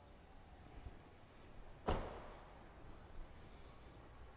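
Quiet room tone with one sharp knock about two seconds in, followed by a short ringing decay.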